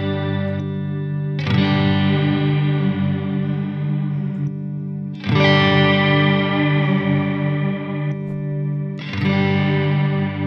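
Electric guitar chords sustained through a Strymon NightSky reverb pedal, with its modulation routed to the filter and set to a different LFO shape. A chord is struck about every four seconds, three times, and the bright upper tones cut off sharply shortly before each new strike.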